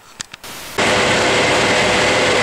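A few faint clicks, then less than a second in a loud steady machine drone starts abruptly with a steady whine through it: the electric motors and water pumps of a pumping station's machine hall running.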